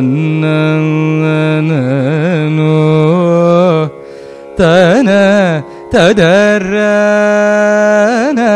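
Solo male Carnatic vocal: a teenage singer improvising a raga alapana in Kalyani, holding long notes and weaving oscillating gamaka ornaments between them. Underneath runs a steady drone from an electronic shruti box, heard alone in two brief breaks in the singing.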